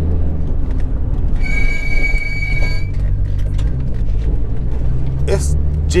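Steady low drone of the Skyline GT-R's RB26 twin-turbo straight-six and its exhaust, muffled by an inner silencer, heard from inside the cabin while driving. About a second and a half in, a steady high-pitched squeal lasts roughly a second and a half.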